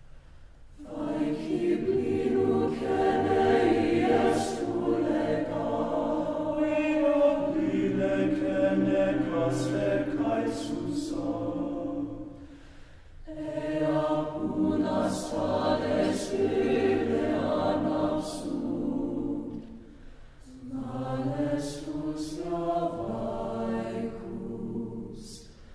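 Mixed choir of men's and women's voices singing unaccompanied in slow, sustained chords, in long phrases with brief breaths between them about halfway through and again later, and crisp sibilant consonants standing out.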